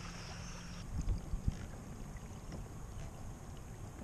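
Outdoor ambience on open water: wind rumbling on the camera microphone, with a few low thumps of wind buffeting about a second in. Just before, a steady low hum and a high buzz cut off suddenly.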